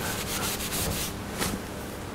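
Cloth rubbing across a chalkboard, wiping off chalk marks in a few short strokes.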